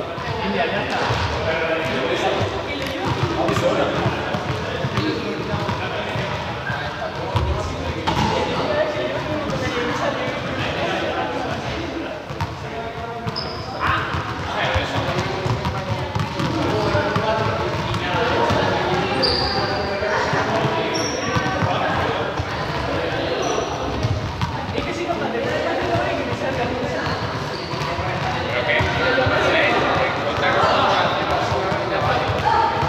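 Balls bouncing and thudding on a sports hall's hard floor, under a continuous babble of voices that echoes around the hall. A few short high squeaks come in the middle stretch.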